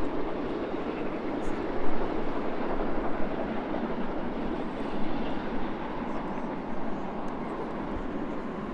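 Steam locomotive working hard with a heavy exhaust as it hauls a train away around a curve, the sound slowly fading.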